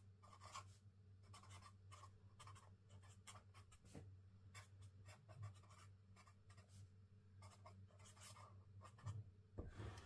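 Black marker writing on journal paper: faint, irregular scratches of short pen strokes as words are lettered by hand.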